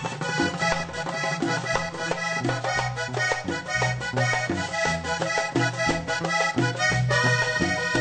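Vallenato music: a diatonic button accordion plays a lively instrumental passage over an electric bass line and a steady beat.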